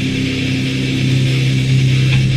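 Crossover thrash music: distorted electric guitars holding one steady, sustained low chord, with no drums and no vocals.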